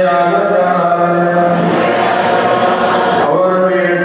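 A man's voice chanting a Syriac Orthodox liturgical prayer over a microphone, holding each phrase on a long steady note and moving to a new pitch a little before halfway and again near the end.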